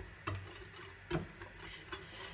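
A fork whisking batter in a ceramic bowl, with a few light, irregular clicks of the fork against the bowl.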